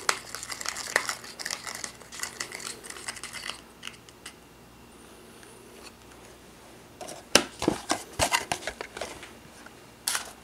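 Small plastic candy-kit packet and tray crinkling as they are handled, then a small plastic spoon stirring ketchup mix in the plastic tray. A run of sharp plastic clicks and taps comes about seven to nine seconds in.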